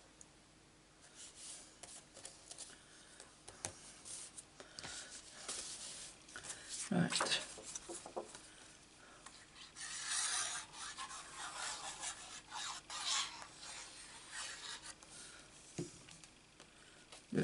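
Card stock being handled and rubbed on a craft mat: paper sliding and rustling, a light knock about seven seconds in, and longer rubbing strokes near ten and thirteen seconds as glued card pieces are pressed down.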